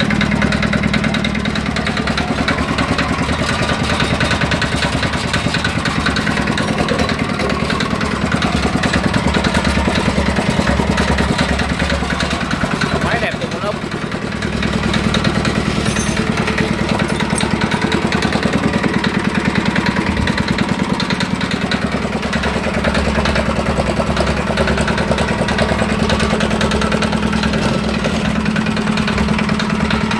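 Yanmar SSA50 small diesel engine running steadily, with a quick, even beat of firing strokes. The level dips briefly about halfway through, then returns.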